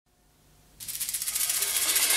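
Silence, then about a second in light high-pitched percussion starts a fast, even rhythm, opening the next song of a live band performance.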